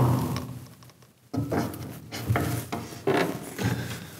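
Lower wooden front panel of an upright piano being unfastened and taken off: a series of about five wooden knocks and rubs, each with a short ringing tail.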